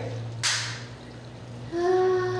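A brief splash of bathwater about half a second in, then a woman's long, contented sigh 'haa' from the hot bath, starting near the end. A steady low hum runs underneath.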